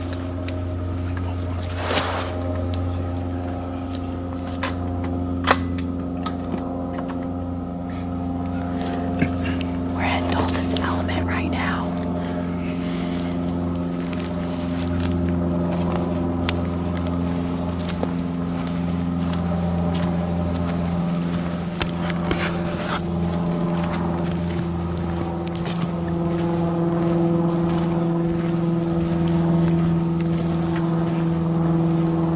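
An engine running at a steady low hum, its pitch shifting slightly in the second half. Scattered sharp clicks and a short stretch of rustling sit over it.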